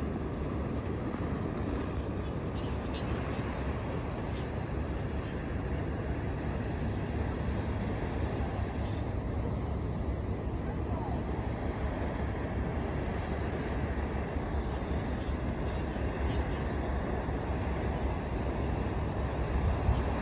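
Steady, even outdoor harbour background noise, a low rumble with no distinct events.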